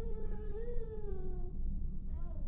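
A baby crying: one long wail that rises slightly and then falls away, over a steady low rumble.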